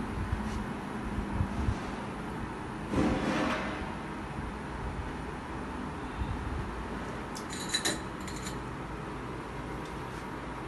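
Kitchen handling sounds over steady room noise: a few soft knocks early on, then a short cluster of light, ringing clinks of utensils and containers about eight seconds in, as ingredients go into a marinade.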